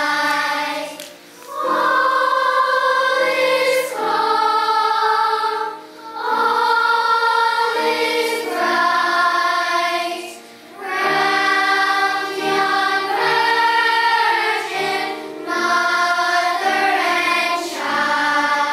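Children's choir singing, in sung phrases broken by a few brief pauses between lines.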